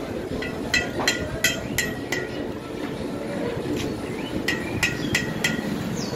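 Light metal-on-metal taps on a Yamaha RX100 two-stroke engine's parts during engine work, each with a short ring. About six come at roughly three a second, then after a pause about five more.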